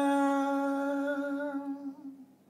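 A woman's unaccompanied voice holding the long final note of a sung line, one steady pitch that slowly fades and stops just before the end.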